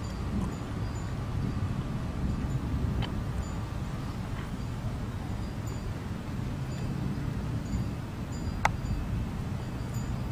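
Steady low outdoor background rumble with wind on the microphone, and a few faint, short high tones scattered through it; a single sharp click about nine seconds in.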